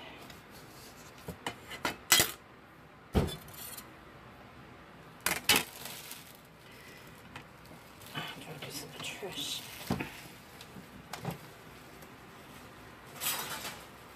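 A smashed metal picture frame and its glass being handled and taken apart on a tabletop: scattered sharp clinks and taps, about half a dozen, with a longer scraping rustle near the end.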